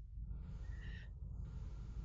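A pause in a call-microphone recording: a steady low hum of microphone and room noise, with a short, faint intake of breath just before one second in.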